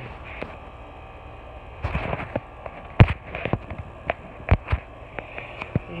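Irregular sharp clicks and knocks over a steady low hum, the loudest about three seconds in, with a few more around four and a half seconds.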